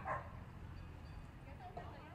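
A dog gives a short bark right at the start and a fainter yip near the end, over quiet crowd chatter.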